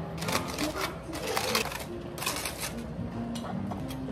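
Aluminium foil crinkling in irregular bursts as foil cooking packets are pulled open by hand.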